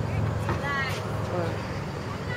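Distant voices calling out over a steady low hum, with one high-pitched call about half a second in and a shorter one after it.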